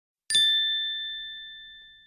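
A single chime ding struck once about a third of a second in, a clear bright ring that fades away slowly.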